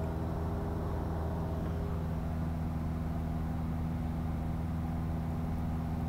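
Cessna 172 Skyhawk's piston engine and propeller droning steadily in flight, heard inside the cockpit.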